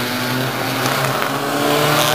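Several race cars' engines running hard as the field drives past, with a number of engine notes overlapping at different pitches.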